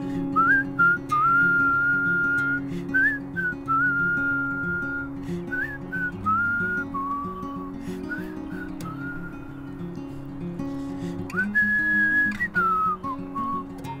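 A man whistling a melody in held notes, each starting with a short upward slide, with a higher note near the end that falls away. Under it, a steadily strummed acoustic guitar.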